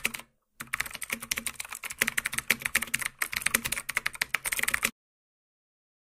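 Computer keyboard typing: a rapid, continuous run of key clicks, pausing briefly just after the start and stopping abruptly about five seconds in.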